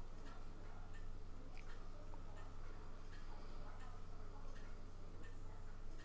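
Small quartz clock movement ticking faintly, light separate ticks over a low steady hum.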